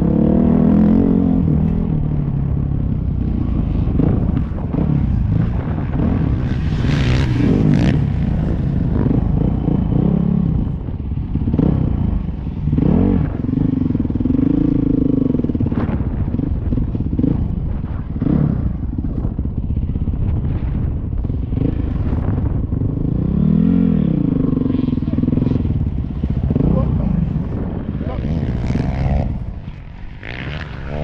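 Dirt bike engine revving up and falling back again and again as it is ridden around a motocross track, heard over rough wind noise on a helmet-mounted microphone. It drops lower near the end as the bike slows alongside another rider.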